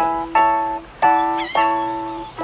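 Piano chords struck about four times, each ringing and fading before the next, over a sustained held note: a simple rock-and-roll chord pattern played at the keyboard.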